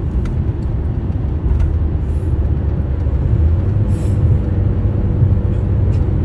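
Steady low rumble of road and engine noise inside a car's cabin at highway speed, with a couple of brief hisses about two and four seconds in.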